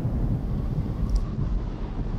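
Low, steady rumble of an explosion sound effect for an asteroid impact.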